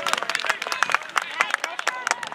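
Several spectators clapping in a quick, irregular patter, applauding the goalkeeper's save, with faint voices under it.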